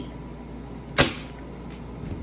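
A single short, sharp knock or snap about a second in, from a deck of tarot cards being handled on a table.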